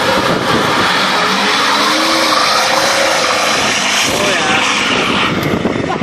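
Ford 6.4 L Power Stroke twin-turbo V8 diesel pickup, on an aftermarket tune with a relocated exhaust, pulling away under hard throttle: a loud, steady rushing roar with the revs gliding up and down a couple of times.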